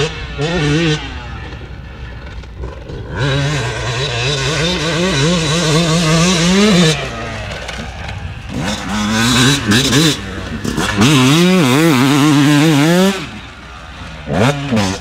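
A 2020 Yamaha YZ250's two-stroke single-cylinder engine revving hard as the dirt bike is ridden, its pitch rising and falling with the throttle. A quick blip at the start, a long rising pull from about three seconds in that drops off near seven seconds, then a run of rapid up-and-down revs that falls away near the end.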